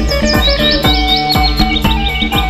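Background music with a steady drum beat of about three strikes a second under held instrument notes, mixed with many birds chirping at once, like a dusk roost of birds gathering in trees.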